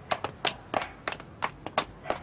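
Quick footsteps on street pavement: a string of short, sharp steps, about three or four a second.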